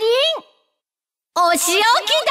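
A high-pitched female voice making two short exclamations with a pause between them; the second call rises in pitch at its end.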